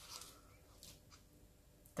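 Near silence: room tone, with a couple of faint soft ticks about midway.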